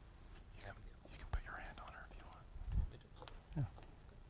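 Quiet whispered speech, with a sharp click and a couple of low thumps.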